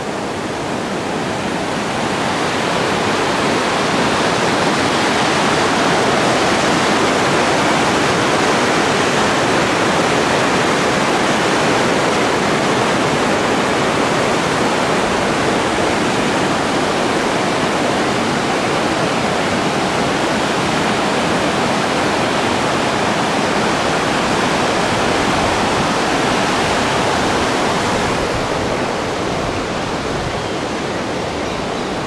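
Shallow river water rushing over a series of low rock cascades, a steady loud roar that builds over the first two seconds and eases slightly near the end.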